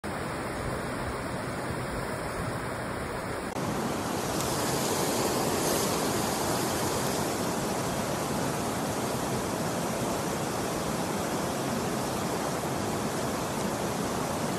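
Water rushing over a small rocky weir, a steady noise. About three and a half seconds in it gives way to a similar, slightly louder steady rush.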